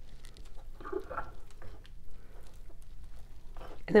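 Small clicks, taps and scrapes as a metal ice cream scoop is handled and dug into stiff, thickened soy wax in a glass bowl.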